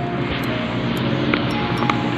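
Background music with steady held notes and a few short sharp clicks.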